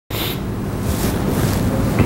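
Steady low rumbling room noise with a faint hum, loud on the microphone.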